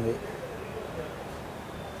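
A brief pause between voices: a voice trails off at the very start, then only faint steady room noise.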